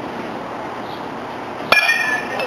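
Baseball bat hitting a pitched ball about one and a half seconds in: a single sharp crack with a short ringing tone after it, the ball struck hard for a line drive.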